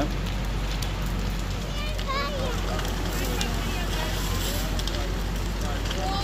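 A house fully engulfed in flames, burning with a steady crackling and popping.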